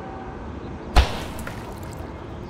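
A single sharp knock about a second in, heavy in the low end with a short fading tail, over a steady low background hum.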